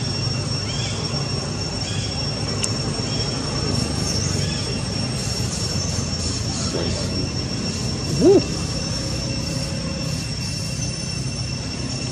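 A steady high-pitched whine over a low outdoor rumble. About eight seconds in, a long-tailed macaque gives one short, loud call that rises and then falls in pitch.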